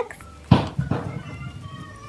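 A single soft thump about half a second in, as hands press Play-Doh down against a wooden tabletop, followed by faint handling rustle.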